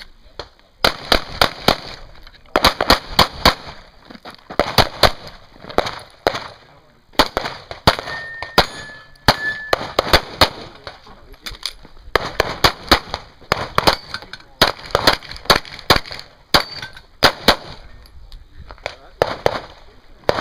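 Handgun shots fired in rapid strings of several, with short pauses between strings, as a competitor runs a practical shooting stage.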